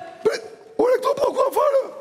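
A person's voice: a short, sharp hiccup-like sound, then about a second of wordless, pitch-bending vocalising.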